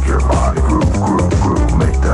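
Electronic dance music from a DJ mix recorded off the radio onto cassette: a steady kick-drum beat under pitched sounds that bend up and down in the middle range.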